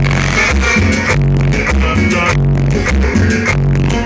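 Cumbia band playing: a steady bass line and percussion under keyboards and guitar, a continuous loud mix with a regular beat.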